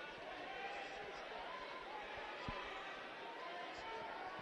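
Arena crowd murmur with faint distant voices calling out, and one short dull thump about two and a half seconds in.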